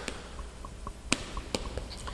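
Chalk writing on a blackboard: light taps and short strokes, with two sharper taps about a second and a second and a half in.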